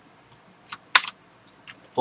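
A few separate keystrokes on a computer keyboard, sharp clicks spaced irregularly, the loudest about a second in.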